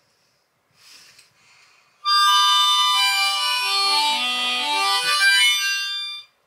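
Harmonica playing a short phrase of held chords that step down in pitch, starting about two seconds in. A faint rustle comes about a second in.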